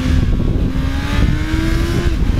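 2001 Yamaha FZ1's carbureted 1000cc inline-four engine under throttle, its note climbing steadily as the bike gathers speed. Heavy wind noise on the helmet microphone rumbles underneath.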